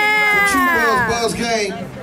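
A man's long, drawn-out shout: one held note that holds steady, then falls away about a second in, followed by brief speech.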